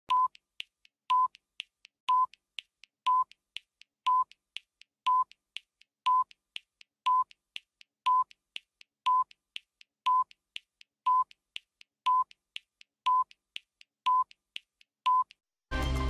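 Broadcast countdown-clock time signal: a short high beep once a second, with a fainter tick between beeps, counting down to the top of the hour. The news theme music starts loudly just before the end.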